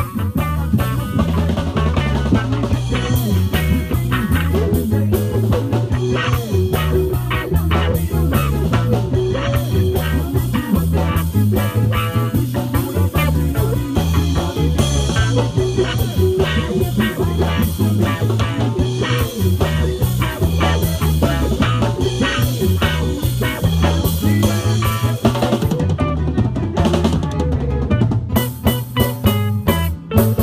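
Live reggae band playing, the electric bass line and drum kit with rimshots to the fore and guitar behind, picked up close from the stage floor so the bass is heavy.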